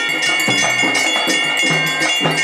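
A ritual hand bell rung without pause over drumming on dholu drums, the drums keeping a steady beat of about three strokes a second.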